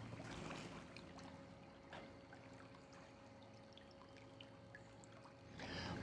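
Near silence: faint outdoor background with a faint water trickle, a faint steady hum and a few soft ticks.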